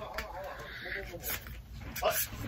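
A faint, distant voice answering from off-camera, too quiet for its words to be made out.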